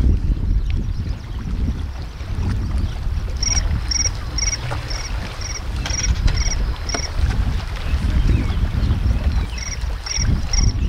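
Wind buffeting the microphone with a heavy, uneven low rumble. From about a third of the way in, a short high chirp repeats about twice a second.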